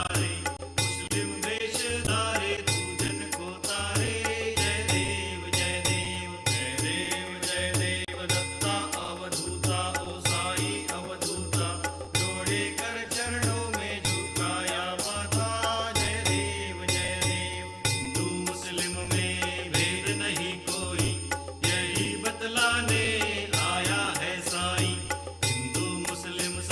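Devotional aarti music: voices chanting a hymn over a steady percussion beat.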